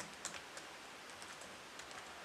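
Faint typing on a computer keyboard: irregular keystroke clicks, the sharpest ones in the first half second, with more scattered taps through the rest.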